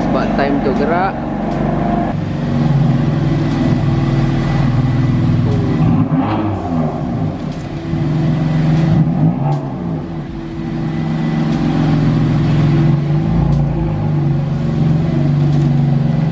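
BMW M4's twin-turbo straight-six running as the car pulls out and drives off, its revs rising and falling twice around the middle.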